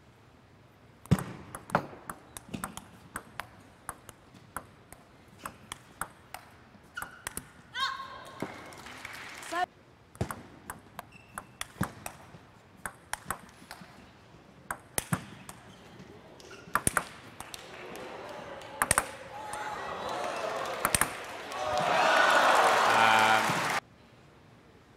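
Table tennis rallies: the plastic ball clicks sharply and irregularly off bats and table. There is a short shout about eight seconds in, and near the end the crowd's cheering swells and then cuts off abruptly.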